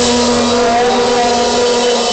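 Live rock band's distorted electric guitar holding one loud, steady chord.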